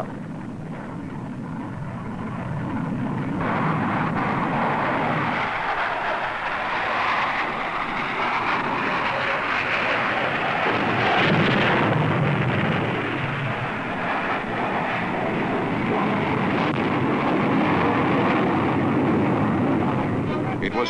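Jet strike aircraft in flight: a steady rushing engine noise that swells over the first few seconds and is loudest about halfway through.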